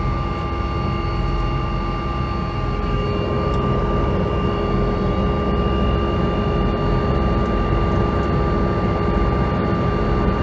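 Helicopter turbine engine and rotors running: a steady high whine over a deep rumble, heard from inside the cabin. The pitch of the whine shifts slightly about three seconds in.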